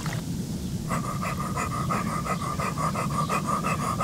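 Vocal beatbox: a man making a fast, even, breathy rhythm with his mouth, starting about a second in. The churning water of hot tub jets runs underneath.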